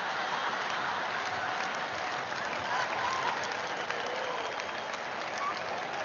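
Audience applauding steadily in a large hall, with a few scattered voices in the crowd.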